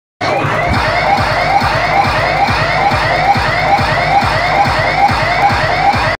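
Loud sound-system music with a siren-like effect: a rising pitch sweep repeats a little over twice a second over a steady bass beat.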